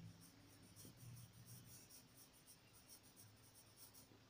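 Faint, intermittent scratching of handwriting on a paper textbook page.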